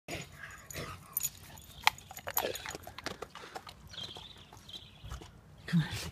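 Chocolate Labrador retriever moving about on grass, with scattered sharp clicks and short rustling sounds.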